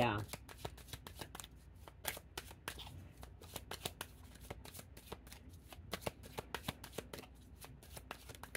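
Deck of tarot cards being shuffled by hand: a long run of quick, irregular card clicks.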